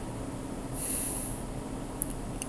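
A short, sharp breath through the nose about a second in, over a steady low electrical hum.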